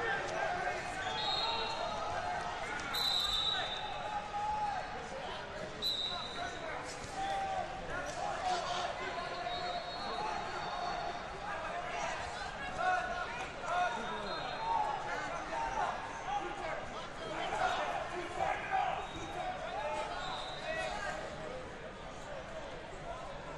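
Busy wrestling tournament hall: many overlapping voices of coaches and spectators shouting and talking. Several short, shrill referee whistle blasts cut through, with occasional thuds of bodies hitting the mats.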